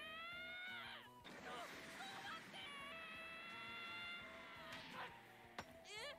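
Anime episode soundtrack playing quietly: background music, with two long, drawn-out pitched vocal sounds over it, the first just after a character's shouted apology.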